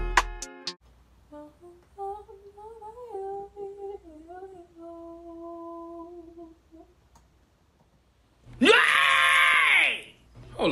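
A woman humming and singing a slow melody softly to herself, wavering and then holding a few long notes. Near the end she lets out one much louder drawn-out sung note that rises and falls in pitch.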